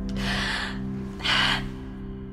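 Film-trailer score holding a sustained low chord, with two short, sharp gasps over it about a second apart; the second gasp is louder.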